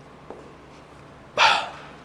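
A person's short, loud, breathy vocal sound, about a third of a second long, about one and a half seconds in, over quiet room noise.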